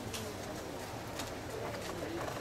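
A bird calling faintly a few times with short, low-pitched calls, over a steady background hum, with a few soft clicks.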